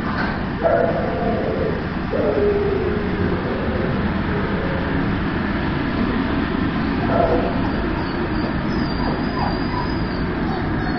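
Dogs in shelter kennels calling out briefly three times: about half a second in, at two seconds (a falling call) and at about seven seconds. A steady background rumble runs underneath.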